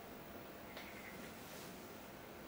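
Quiet room tone with a faint steady hiss and one soft click about three quarters of a second in.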